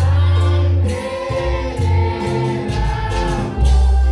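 Live gospel worship music through a church PA: a man singing into a microphone over keyboard, deep bass notes and drum-kit cymbals.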